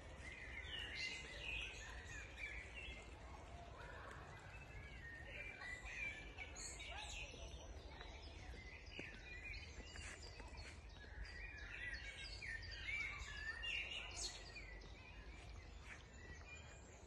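Several songbirds singing at once: overlapping short chirps and warbled phrases throughout, over a steady low rumble.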